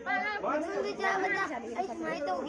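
Only speech: people chattering.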